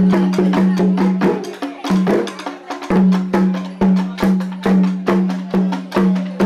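Traditional percussion: drums struck in a fast, driving rhythm of sharp strokes, with a low resonant drum tone ringing under each accent.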